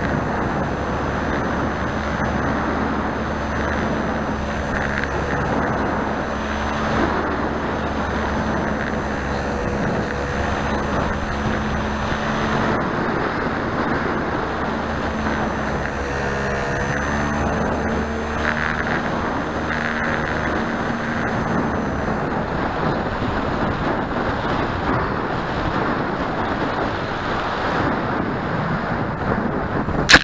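Wind rushing over a wing-tip camera's microphone on a radio-controlled J3 Piper Cub model airplane in flight, with the steady hum of its motor and propeller underneath. The hum drops away about three-quarters of the way through as the plane comes in low to land.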